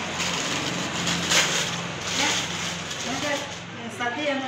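Gift-wrapping paper rustling and tearing as a present is unwrapped, louder in a crackling surge about a second and a half in, over background chatter and a steady low hum.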